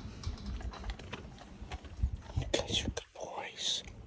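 Light, irregular clicks and crunches as two Deutsch Drahthaar (German wirehaired pointers) take and eat treats from a hand through a chain-link kennel fence.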